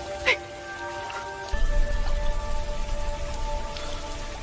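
Film soundtrack: held notes of score music over dripping water, with a sharp drip about a third of a second in and a deep low rumble that comes in about one and a half seconds in.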